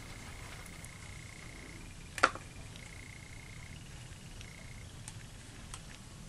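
A single sharp plastic click about two seconds in as the lid and dome are lifted off the enclosure, with a couple of faint ticks near the end. Under it runs a faint high whine that comes and goes.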